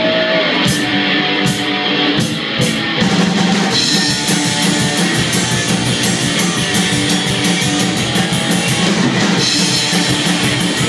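Live rockabilly band playing: hollow-body electric guitar, slapped upright bass and drum kit. The first few seconds are sparser, marked by a few cymbal hits, then the full band comes in about three seconds in with a fast, steady cymbal beat.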